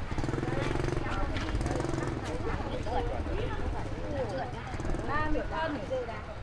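Small motorbike engine running as it rides away, loudest in the first few seconds and weaker after that, with people's voices talking over it.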